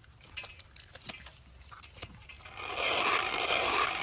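A few faint snips of scissors cutting mantis shrimp shell. Then, about two and a half seconds in, a wooden hand-cranked pepper mill starts grinding pepper steadily.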